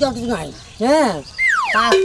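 A comic cartoon-style sound effect: a whistle sliding steeply down in pitch about one and a half seconds in, then holding a low note. Short vocal exclamations come just before it.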